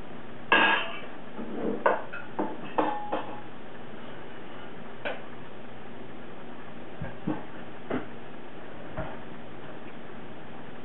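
Light knocks and clinks of a hard container being handled: a quick irregular cluster in the first three seconds, then a few scattered taps.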